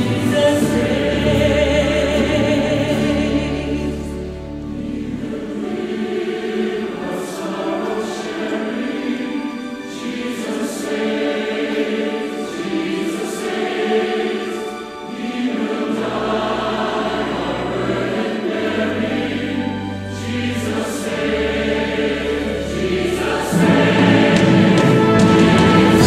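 Large choir singing a hymn with full orchestral accompaniment, sustained low bass notes underneath. The music swells louder near the end.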